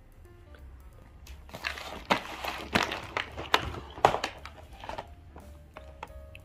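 A cardboard advent calendar being handled and turned over: a busy run of cardboard rustles, scrapes and knocks from about a second and a half in until near the end, over faint background music.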